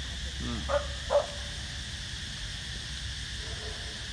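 A dog giving two short, high yelps about a second in, over steady outdoor background noise.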